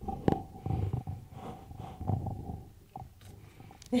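Breathing and mouth noises picked up close on a microphone: irregular low rumbling puffs, with a sharp click about a third of a second in and a faint steady tone underneath for the first half or so. A short laugh comes at the very end.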